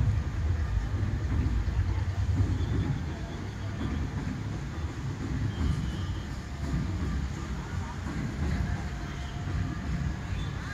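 A low, uneven rumble that rises and falls in loudness, with faint distant voices.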